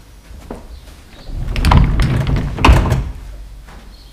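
Sliding doors of a synagogue Torah ark being pulled open along their track: a rumbling slide lasting about two seconds, with two louder peaks.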